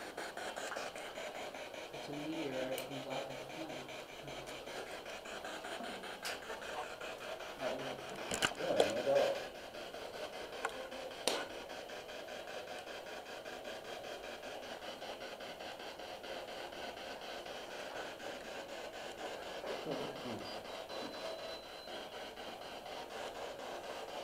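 Steady hiss with faint, indistinct voices a couple of times and a few sharp clicks.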